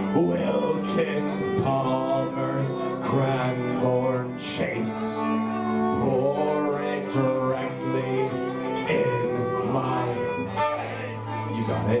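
Live band music: a fiddle plays a slow melody in long held notes over strummed guitar and mandolin, with a couple of cymbal washes.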